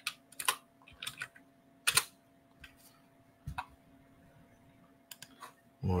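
Computer keyboard being typed on in short, irregular runs of keystrokes, with a few single, sharper clicks, one louder about two seconds in, as a search is typed in.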